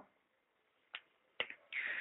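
Two faint, sharp clicks about half a second apart, then a short soft hiss near the end.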